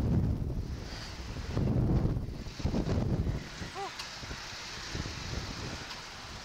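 Wind buffeting the on-board camera's microphone in gusts as the slingshot ride capsule swings, loudest near the start and again from about one and a half to three seconds in. A short vocal sound from a rider comes about four seconds in.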